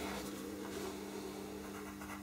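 Faint scratching of a pastel pencil being drawn across paper, with a steady low hum underneath.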